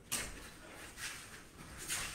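Soft scuffs and swishes of barefoot Wing Chun sparring on a foam mat: three faint brushing noises, one at the start, one about a second in and one near the end.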